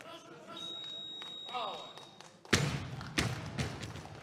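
A loaded barbell with bumper plates dropped from overhead onto the wooden lifting platform: one loud thud about two and a half seconds in, then a smaller bounce. Before it, a steady high beep and voices.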